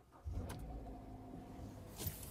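A 2017 Hyundai Sonata LF's engine starting on jumper cables, catching about a quarter second in and settling into a steady idle.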